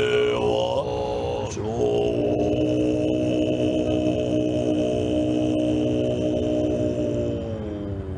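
Tibetan monks' throat-singing chant: deep voices with a steady high tone above them. After a short break about a second and a half in, they hold one long low note that sags in pitch near the end.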